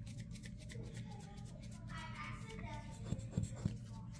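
Faint handling noise from craft supplies, with a few soft clicks about three seconds in, over a steady low room hum.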